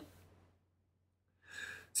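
Near silence, then a short inhaled breath about one and a half seconds in, just before a man's narrating voice resumes.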